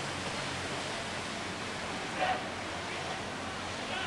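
Steady outdoor noise of wind and water, with one short sharp sound about two seconds in. It is part of a beat that repeats about every three seconds, in time with the strokes of a crew rowing a wooden boat.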